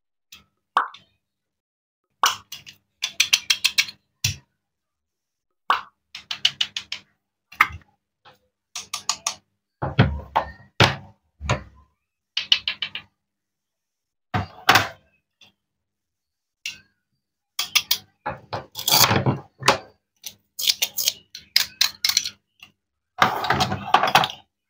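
Plastic toy fruit and vegetable pieces being handled: short clusters of clicks, knocks and rattling clatter as they are picked up, knocked together and set down on a wooden toy cutting board, with silent gaps between the bursts.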